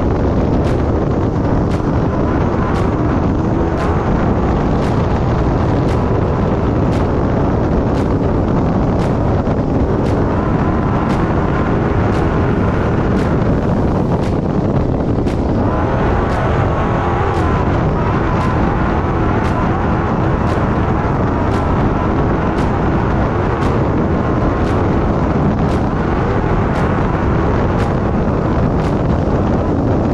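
Trophy-bug off-road race car driving fast over a desert dirt track, with steady engine, tyre and wind noise heard from on board. A steady high tick beats about three times every two seconds over it.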